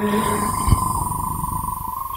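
A pause between sung lines: the hall's background noise is carried by the sound system, with a steady high tone running through it. A sung note cuts off just at the start.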